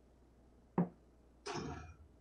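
A soft-tip dart hits a TRiNiDAD electronic dartboard with one short, sharp knock a little under a second in. About half a second later comes a brief electronic tone from the machine as it registers the dart as a 20.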